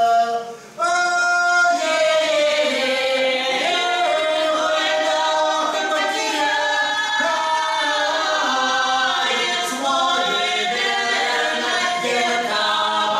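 A small Russian folk ensemble of women's voices and a man's voice singing a cappella together. After a short breath between phrases about a second in, the singing runs on unbroken.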